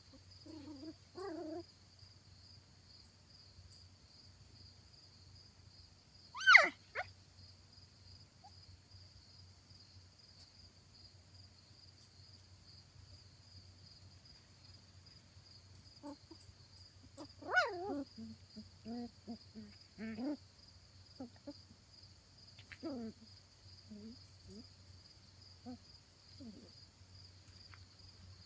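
Shetland sheepdog puppies vocalising as they play-wrestle: short yips and whines, one sharp high yelp falling in pitch about six seconds in, the loudest sound, and a run of short yips and grunts later on.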